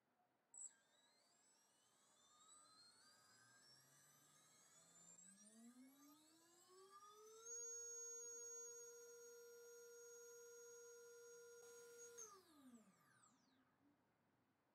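MAD Racer 2306-2400KV brushless motor, spinning with no propeller on a thrust stand, whining upward in pitch as its ESC ramps the throttle. It holds a steady high whine at full throttle for about five seconds while its KV is measured, then falls in pitch as the throttle cuts and it spins down. A brief tick about half a second in.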